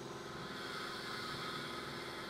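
Berlin S-Bahn train running along the track: a steady rumble with a hum of several held tones and a hiss that swells slightly partway through.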